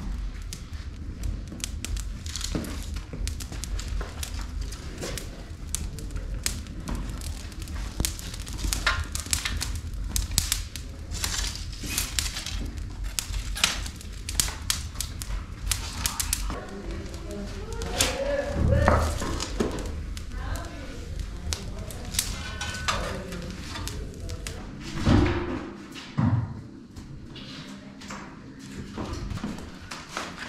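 A brushwood fire crackling in a wood-fired bread oven, with many sharp pops and snaps as twigs are fed into it, over a low rumble. A single heavy thump comes near the end.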